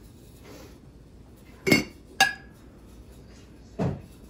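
Ceramic and glassware knocking against each other and against a table as pieces are handled and set down. Two sharp ringing clinks about half a second apart near the middle, then a duller knock near the end.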